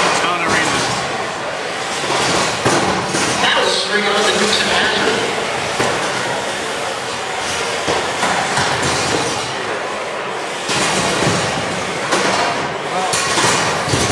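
Two 30-pound wedge combat robots driving on the arena floor: a steady rattling rumble of wheels and drive motors, with a few knocks, over the chatter of voices.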